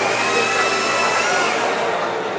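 Steady rushing noise, with a faint high whistle that fades out about a second and a half in.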